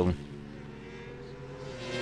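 Superbike racing motorcycle engines running at high revs on the circuit, a steady drone whose pitch sinks slowly, growing louder near the end.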